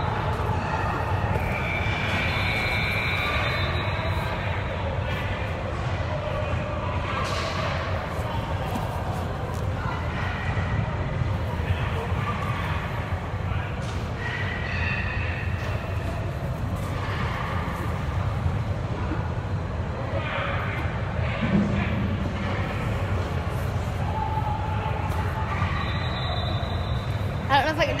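Steady low rumble of a large, echoing indoor sports hall, with faint distant voices through it.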